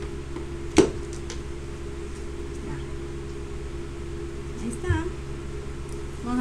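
Steady hum of an electric fan running, with one sharp click about a second in.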